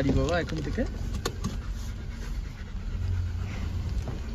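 A dog panting inside a car's cabin over the car's low, steady rumble, with a brief high wavering voice in the first second and a couple of small clicks.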